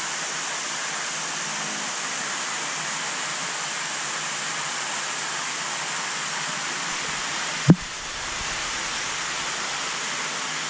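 Steady rush of running water in a large aquarium while its water is being changed and circulated. A single sharp knock, the loudest sound, comes about three-quarters of the way through, and the rush is briefly quieter just after it.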